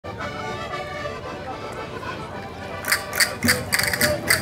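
Portuguese folk-dance music: held, chord-like notes, then about three seconds in a sharp percussion beat comes in at roughly three strikes a second as the dance starts.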